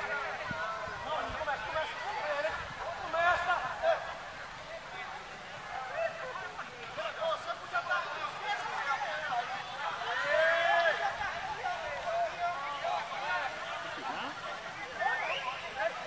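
Voices of spectators: several people talking and calling out over one another, the words unclear.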